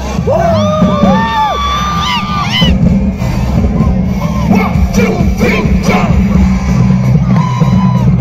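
Live concert music played loud through a large PA system, with a heavy, pulsing bass under a sliding melody line.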